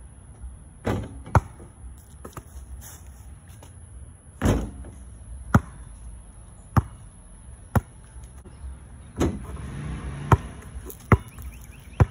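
Basketball being bounced on the ground: single sharp bounces about once a second, with a longer pause in the first few seconds.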